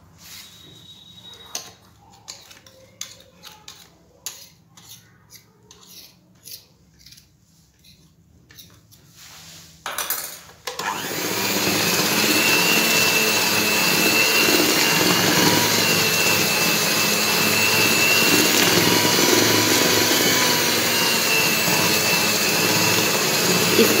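A spoon stirring quiet, irregular clicks and scrapes in a plastic bowl of cake batter. About ten seconds in, an electric hand mixer starts and runs steadily with a constant motor whine, its beaters working the batter.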